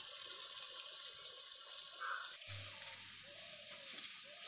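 Onions frying in hot mustard oil in a kadai: a steady sizzling hiss that drops away abruptly a little over two seconds in, leaving a much quieter background.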